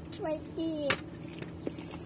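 A young child's voice, a short whining sound with falling pitch in the first second, ending with a sharp click. Then low background with one faint click.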